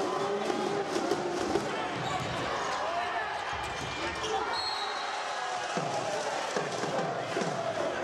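Volleyball rally in a gym: a ball is struck several times with sharp smacks, over continuous shouting from players and spectators.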